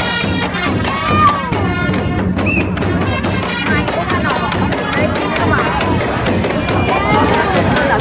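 Background music with the voices of a large crowd of spectators calling and shouting over it.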